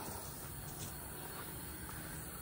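Quiet, steady background noise with no distinct sounds.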